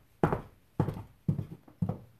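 Footsteps of 7-inch platform high heels on a hardwood floor: four sharp heel knocks about half a second apart, each dying away quickly.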